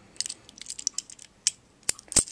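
Small plastic Wheelie minibot toy being handled and its parts folded: a run of light plastic clicks and taps, with sharper clicks about a second and a half in and near the end.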